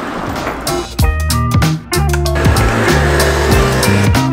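Background music with a bass line and a beat, coming in about a second in after a short rising rush of noise.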